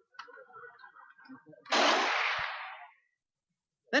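A single loud bang from a mock battle's blank fire, with a sharp onset and a noisy tail that dies away over about a second. Faint, indistinct murmuring comes before it.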